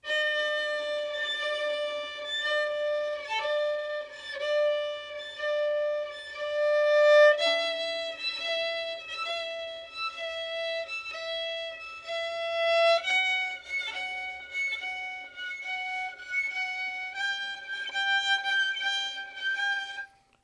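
Violin played in long bowed notes while a left-hand finger alternates between pressing firmly on the string and lifting quickly to a light harmonic touch and back, so each note breaks in a regular rhythm, about one and a half times a second: the slow first stage of practising finger vibrato. The pitch steps up to a higher note three times, about 7, 13 and 17 seconds in.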